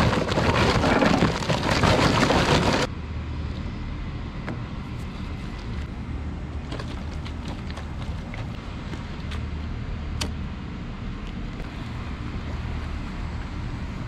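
Charcoal briquettes poured from a paper bag into a metal grill pit: a loud, dense rattling clatter for about three seconds that stops abruptly. Then a steady low rumble of background noise with scattered faint clicks.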